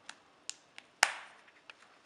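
Cowhide leather bi-fold wallet being handled and folded shut: a few light clicks and taps, with one sharp snap about a second in.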